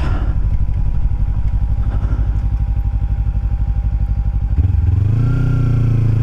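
Kawasaki Ninja 300's parallel-twin engine running at low revs with an even, fast pulsing while the motorcycle rolls along, then picking up as the throttle opens about four and a half seconds in, its pitch rising gently.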